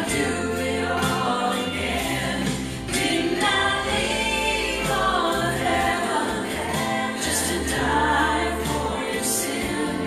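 A gospel song sung with instrumental accompaniment, its low bass notes held for a second or more at a time.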